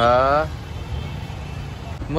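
A man's voice trails off in one drawn-out word at the start, then the steady low rumble of town street traffic continues.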